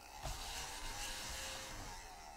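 Red plastic scratcher scraping the coating off a scratch-off lottery ticket: a steady, soft hiss.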